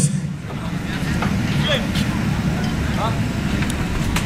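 Indistinct murmur of voices over a steady low rumble, with no one speaking clearly.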